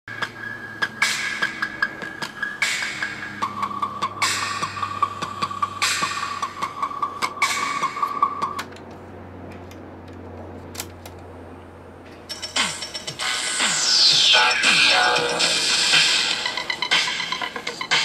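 Electronic music with a beat and steady beeping tones playing through the speakers of an opened Panasonic RX-FM14 portable cassette radio, stopping about eight and a half seconds in and leaving a quieter hum. About twelve seconds in comes a louder hissing, sweeping noise with a falling whistle, lasting a few seconds.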